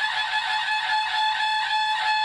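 Tutari, long curved ceremonial brass horns, blown in one long held blast at a steady pitch.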